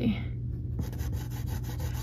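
A soft pastel stick rubbed across paper in quick, scratchy strokes starting about a second in, laying a darker blue into a portrait's background, over a steady low hum.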